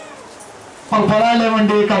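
A man's voice through a handheld microphone: a short pause, then about a second in he comes in loudly, drawing out one long vowel at a nearly steady pitch in a sung, chant-like delivery.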